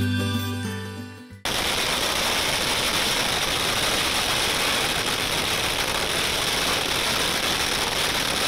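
A long string of firecrackers going off: about a second and a half in, it starts a rapid, unbroken crackle of bangs that runs on evenly, like machine-gun fire. Before it, acoustic guitar music fades out.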